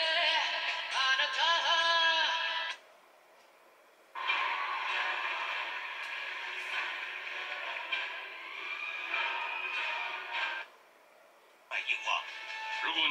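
Television audio changing with the channel. A singer over backing music runs for under three seconds and cuts off suddenly. After about a second of silence, music from another channel plays for about six seconds, then cuts off again, and new sound starts just before the end.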